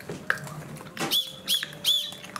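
Small plastic toy whistle on a dagashi candy box, blown in three short, high toots starting about a second in, each bending up and then down in pitch.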